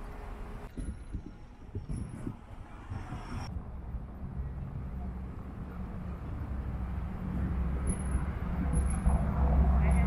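Low engine rumble of a motor vehicle on the street, growing louder toward the end, with faint voices of passers-by.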